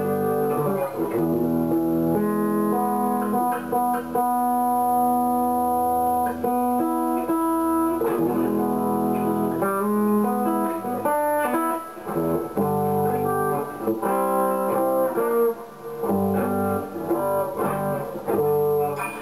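Electric guitar playing a slow series of chords, each left ringing for a second or two before the next.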